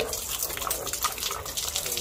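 Water from a running garden hose splashing onto a wet concrete floor, with a pit bull lapping at the stream.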